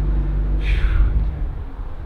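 Car engine idling, a low steady rumble that fades away in the second half. A brief falling hiss comes about half a second in.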